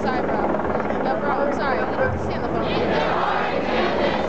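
A large crowd talking and calling out at once, many voices overlapping with no single one clear, over a low steady hum.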